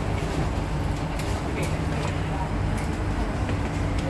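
Steady low hum inside a Kawasaki-Sifang C151B MRT car standing at a platform, with passengers chattering in the background.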